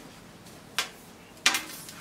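Two brief rustles of folded fabric being handled on a table, a little under a second apart.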